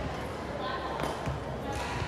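Badminton racket striking a shuttlecock during a rally, one sharp crack about a second in, with fainter hits after it, over background chatter in a large gym.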